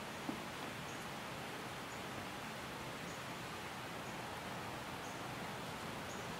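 Quiet outdoor ambience: a steady faint hiss with a soft click shortly after the start and faint, short high-pitched ticks recurring about once a second.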